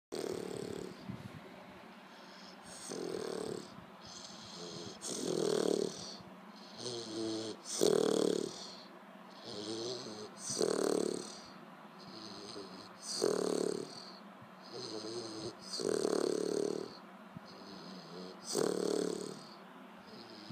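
Olde English Bulldogge puppy snoring in its sleep: regular snores on the breath in and out, a louder one about every two and a half seconds with softer ones between.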